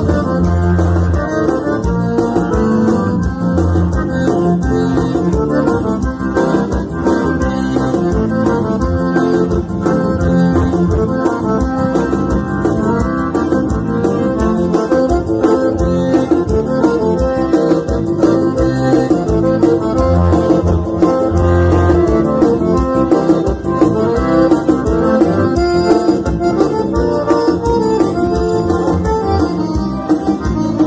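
Piano accordion playing a dance tune over an electronic keyboard accompaniment with a repeating bass line, continuous throughout.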